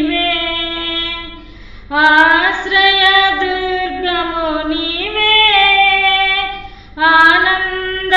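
A woman singing a Telugu Christian hymn solo, with no accompaniment heard, in long held notes. She breaks off twice for breath, just before two seconds in and again near seven seconds.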